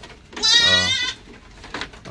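A goat bleating once: a single quavering call of under a second, starting about half a second in.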